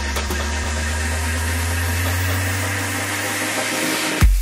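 Electronic dance music build-up with the beat dropped out: a sustained low bass drone glides upward in pitch under a swelling hiss, thinning out near the end.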